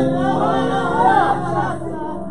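Several voices singing a gospel song together, with pitches gliding and holding over a few steadier low notes.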